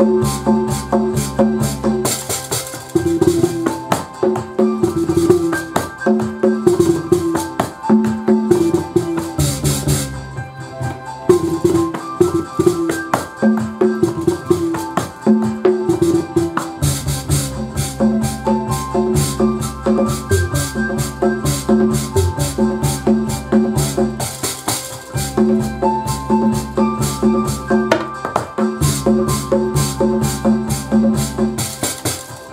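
Bolon bass harp plucked in short, repeating low notes over a keyboard's house-style drum beat and a repeating melody. A deep bass line drops out a couple of seconds in and comes back strongly just past the middle.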